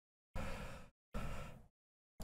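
Two short, noisy breaths from a person, a second or so apart, each fading and then cutting off abruptly.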